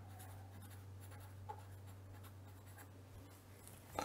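Felt-tip pen writing on paper, a faint scratching of pen strokes over a steady low hum.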